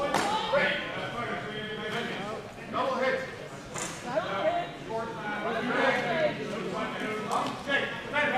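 Indistinct talking among several people in a large hall, with no one voice clear.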